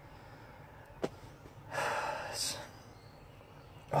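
A man lets out a long breathy exhale, a sigh, lasting about a second, just after a single sharp click.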